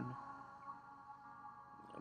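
Faint background music: soft, sustained held tones with no beat, under a pause in the narration.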